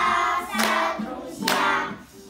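A group of young children singing a song together to an acoustic guitar, in short phrases about a second apart.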